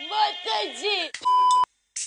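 A woman's voice wailing, its pitch sliding widely up and down, cut off by a loud steady beep lasting about half a second, then silence.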